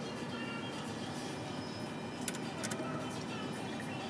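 Electronic music and sound effects from a skill game machine during a win count-up, with two short sharp clicks a little past halfway.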